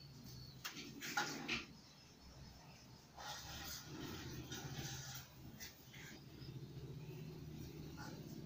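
Faint rustling and a few light clicks from hands handling crochet yarn and a needle, over a low steady hum.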